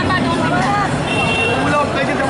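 Crowd of many voices talking and calling at once, none standing out, with a thin steady high tone in the second half.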